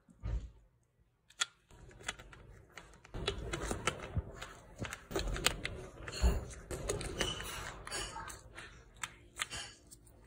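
Handling noise on a 12 V lead-acid battery top: sharp plastic clicks and rustling as gloved hands fit the cell caps back into the filler holes and move the carry strap. A few isolated clicks in the first couple of seconds, then denser clicking and rustling.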